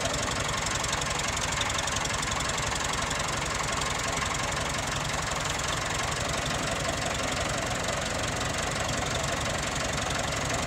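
Massey Ferguson 375 tractor's diesel engine running steadily.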